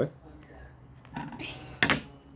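A single sharp clink of a hard object knocking on the table near the end, after a quiet stretch with a brief faint voice sound.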